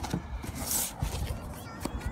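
Faint handling noise and rustle from a phone camera being swung round, with a few small clicks and a short hiss about halfway through.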